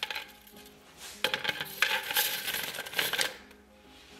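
A tangle of stiff plastic 3D-printer filament from a failed print ("spaghetti") dropping and being pushed into a 3D-printed plastic can. There is a short click right at the start, then about two seconds of dense crackling rustle of the strands, which dies away near the end.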